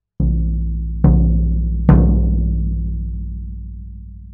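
Floor tom with a one-ply coated Remo Ambassador batter head at a medium tuning, struck three times in the centre with a felt mallet, the second and third hits louder than the first. Its low note rings on long after each hit and slowly dies away.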